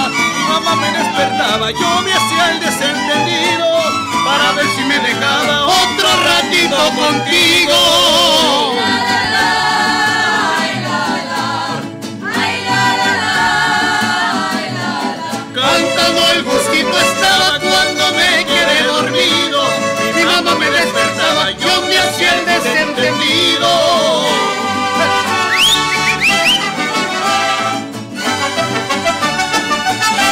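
Student mariachi ensemble playing a son: violins over strummed vihuela, guitar and guitarrón in the lilting three-against-two (6/8 against 3/4) mariachi rhythm, with a voice singing.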